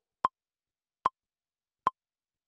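Metronome count-in from a Native Instruments Maschine: three short, evenly spaced clicks about 0.8 s apart, each a brief high blip.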